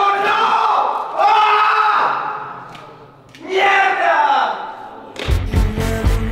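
A man's loud, drawn-out yells of effort on a hard climbing move, two long shouts about two seconds apart. Music with a heavy beat starts near the end.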